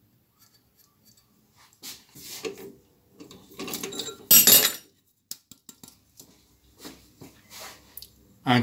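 Light metallic clinks and scrapes as a turned metal ring is handled and taken out of a lathe's three-jaw chuck, with the loudest scrape about four and a half seconds in.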